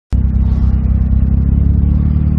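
Daihatsu Copen XPLAY's 660 cc three-cylinder turbo engine running at a steady cruise, a low even drone heard from the open cockpit with the roof down. It starts abruptly just after the start.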